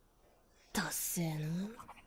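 A soft voice: after a short near-silent moment, a breathy hiss and then one drawn-out murmured syllable whose pitch dips and rises again.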